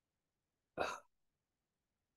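A single brief sound from a person's throat, lasting about a third of a second and starting about three quarters of a second in.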